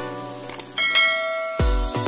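Subscribe-button sound effects over background music: a quick click, then a bright bell-like notification chime that rings for under a second. Near the end, electronic music with a heavy bass beat starts.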